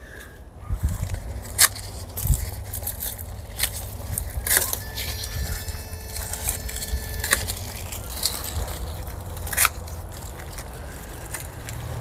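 Several sharp snips of garden scissors at irregular intervals, cutting dry gladiolus stalks, amid rustling and crackling of dry leaves and seed pods being handled. A steady low rumble runs underneath.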